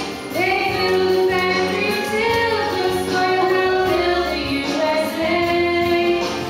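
A girl singing a solo over musical accompaniment, in phrases of long held notes.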